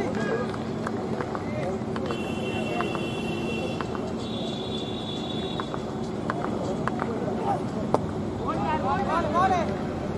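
Crowd and player chatter at a tennis-ball cricket match. Two held high tones come in the first half. Near 8 s a single sharp crack of the bat hitting the tennis ball is followed by shouting voices.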